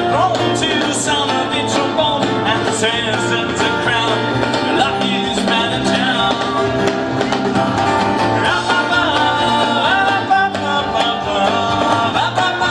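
Live band playing a steady-beat song on acoustic guitars, electric bass and drums, with no words sung.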